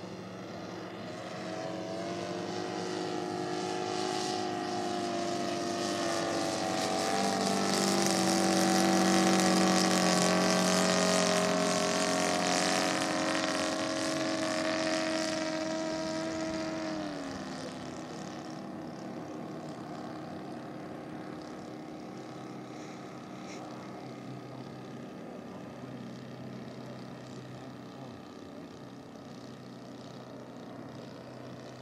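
The 70 cc seven-cylinder Seidel radial engine of a scale model Udet Flamingo biplane, running in flight. It grows louder to a peak about ten seconds in, then fades. Its pitch drops sharply around seventeen seconds in and it carries on at a lower, quieter note.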